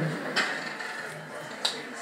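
Quiet room tone with two brief faint clicks, one about half a second in and one near the end.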